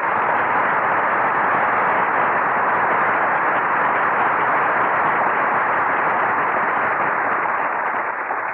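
Studio audience applauding steadily, a dense even clapping that starts suddenly after the music ends. Heard through the narrow, muffled sound of an old broadcast recording.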